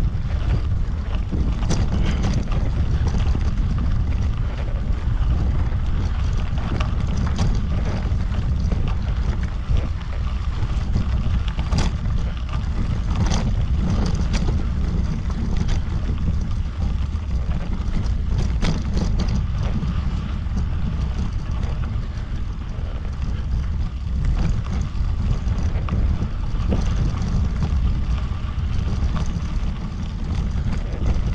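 Wind buffeting the action camera's microphone during a slow bicycle ride on a sandy dirt road, a steady low rumble. Scattered small clicks and crackles from the tyres on grit come through the rumble.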